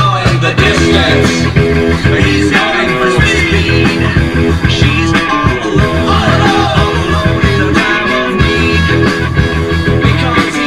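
Rock music with guitar and a steady beat.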